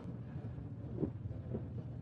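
Faint room noise with a steady low hum, in a pause between speech.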